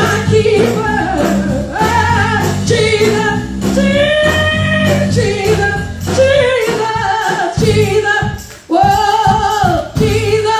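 A woman singing a gospel song into a microphone, holding long notes over a band's sustained low chords; the accompaniment breaks into short pauses in the last few seconds.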